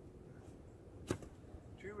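A single short, sharp stroke of a shovel blade scraping and slicing into sod and tree roots about a second in.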